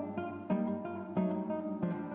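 Solo nylon-string classical guitar played fingerstyle: ringing plucked notes and chords, with new attacks about half a second in, a little past a second, and near the end.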